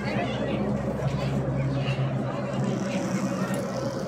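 Steady low mechanical hum of a ropeway's drive machinery, with indistinct chatter of people around it.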